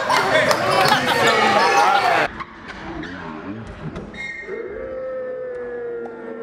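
Players' voices echoing in a gymnasium with a basketball bouncing, cut off suddenly about two seconds in. After a quieter stretch, long held musical notes begin about four seconds in.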